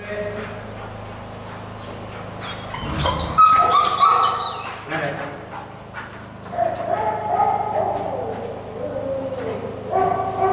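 A shepherd dog whining and yelping, loudest about three to four seconds in, then further drawn-out wavering whines. A steady low hum runs underneath.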